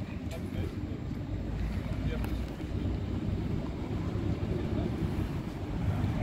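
Diesel bus engines running close by: a steady low rumble that grows louder toward the end as another bus approaches.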